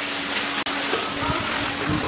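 Steady rushing noise with a low hum on a handheld camera's microphone as it is carried along while walking, with low handling thumps twice in the second half. The sound cuts out for an instant just after half a second.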